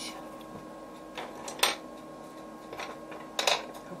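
Colored pencils being handled: several sharp clicks and clatters, about a second and a half in and again near the end, as one pencil is put down and another picked up, between quieter scratching of pencil on paper.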